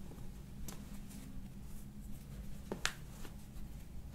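Hands handling a bare foot and a paper towel during a chiropractic foot and toe adjustment: soft rustling with a few small clicks, the sharpest a little under three seconds in, over a faint steady hum.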